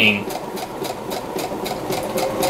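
Brother XR1300 computerized sewing machine stitching at slow pedal speed: the needle clatters in an even rhythm of about five stitches a second over the steady hum of its motor.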